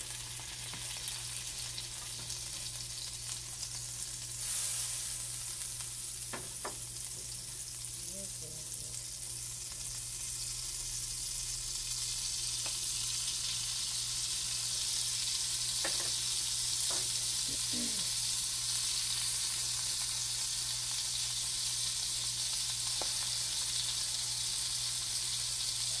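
Butter and pancake batter sizzling in a hot nonstick frying pan: a steady frying hiss that grows louder about halfway through as fresh batter is poured in. A few light clicks sound over it.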